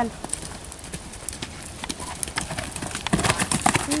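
Hoofbeats of a horse cantering on a sandy gravel track, a run of dull thuds and crunches that grows louder after about three seconds.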